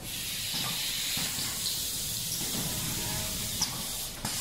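Pouch packing machine running: a steady high hiss of compressed air over a low mechanical rumble, with one short click near the end.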